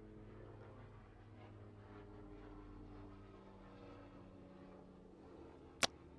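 Faint low drone of a loud aircraft passing overhead, a few steady hum tones slowly shifting in pitch. A single sharp click near the end.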